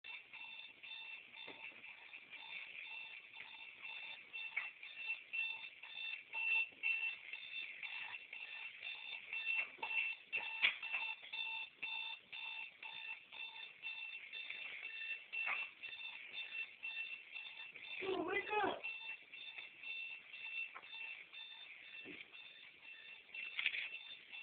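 Electronic alarm clock beeping: rapid, evenly spaced high-pitched beeps that repeat without a break. A brief voice is heard once, about three quarters of the way through.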